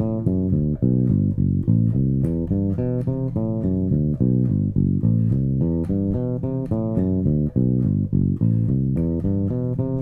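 Five-string electric bass played fingerstyle: a steady, even stream of single notes climbing and falling through arpeggios. It is a sequential arpeggio exercise that alternates the even and odd scale degrees.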